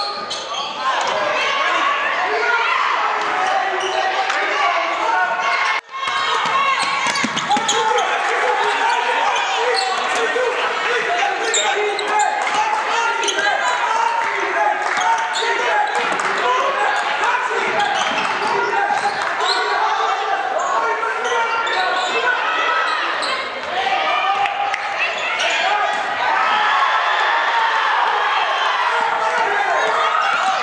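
Live basketball game sound in a gymnasium: a ball dribbling and bouncing on the hardwood court, with a steady mix of players' and spectators' voices. About six seconds in, the sound drops out for a moment.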